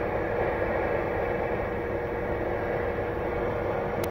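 Uniden Grant XL CB radio's speaker giving a steady hiss of band static with no voice on the channel, a faint steady tone running under the noise.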